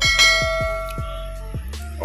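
A bell chime sound effect struck once, its bright tone ringing out and fading over about a second and a half, over background music.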